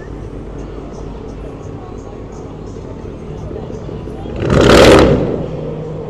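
Pickup truck's engine rumbling low as it rolls past, then a loud swell of exhaust noise lasting about a second as it accelerates away, about four and a half seconds in.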